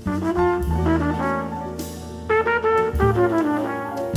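Trumpet playing a quick, many-note jazz solo line over a live rhythm section of double bass, piano and drums, the bass holding low notes of about a second each.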